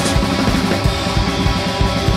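Live funk band playing an instrumental passage: drum kit, electric guitar, and keyboards with the bass line played on keys. A cymbal crash opens it.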